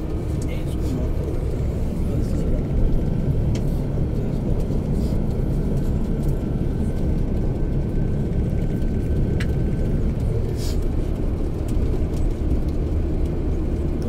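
Steady low rumble of a bus's engine and tyres heard from inside the moving bus, with a few faint clicks and rattles.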